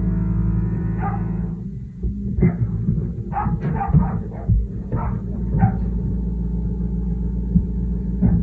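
A dog barking in a quick run of about eight barks, starting about two seconds in and stopping near six seconds, over a steady low drone. It is the neighbours' dog, heard from the next apartment.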